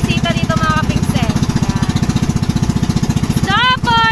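A small engine running steadily with a fast, even chugging rhythm.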